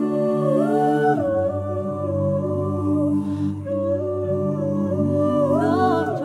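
A cappella vocal ensemble of about eleven mixed voices singing slow, sustained chords in close harmony, with no instruments. A low bass part comes in about a second in, and the chord shifts again near the end.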